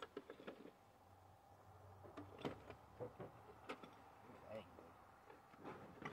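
A few quiet, scattered clinks and knocks of loose metal dirt bike engine parts being handled and shifted in a cardboard box.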